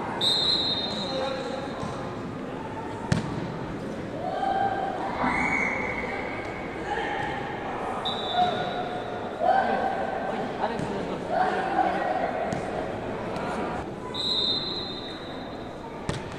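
Ecuavoley rally on a wooden indoor court: players' shoes squeak on the floor again and again in short, high-pitched chirps, and a single sharp slap of the ball sounds about three seconds in, with voices in the hall underneath.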